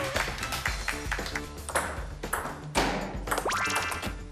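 Table tennis rally: the ball clicking off paddles and table in quick, irregular strokes over background music, with a rising tone near the end.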